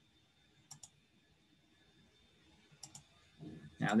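Computer mouse button clicked twice, about two seconds apart, each click a quick press-and-release pair, as points of a freehand selection are placed along a line in Photoshop.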